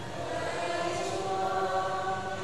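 A choir softly chanting the sung response to a Catholic gospel announcement, with slow, held notes.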